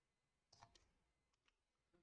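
Near silence, with about four faint computer clicks a little over half a second in and again around one and a half seconds in, as text is selected and replaced.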